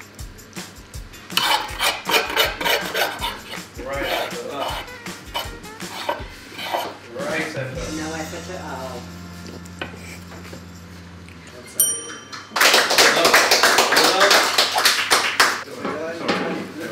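A metal fork scraping and tapping on a wooden serving board as the last of the sauce is scooped up, over background music. About twelve seconds in there is a bright ping, followed by a loud, dense wash of sound.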